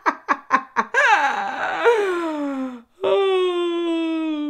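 A woman laughing hard: a quick run of short 'ha' bursts, about five a second, then a long breathy laugh that slides down in pitch. About three seconds in she lets out a long, drawn-out held vocal sound that sinks slightly in pitch.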